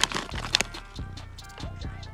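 A foil crisp packet crinkles as it is torn open and handled, sharpest in the first half second. Quiet background music plays under it.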